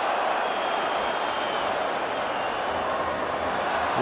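Stadium crowd noise: a steady hum of a large football crowd. A faint high whistle sits over it from about half a second to a second and a half in.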